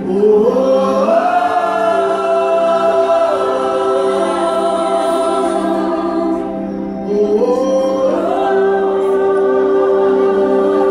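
Gospel worship music: voices singing long held notes over the band, sliding up into a new note at the start and again about seven seconds in. An electric bass guitar is being played along.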